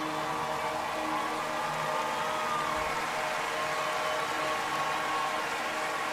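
Steady rush of running water mixed with crowd noise from a live concert recording, with a few faint held synth notes underneath.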